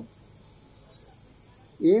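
Crickets trilling in a steady, high-pitched chorus, with a man's voice coming back in near the end.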